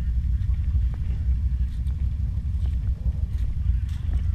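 ATV engine running at low speed, heard as a steady, choppy low rumble close to the microphone.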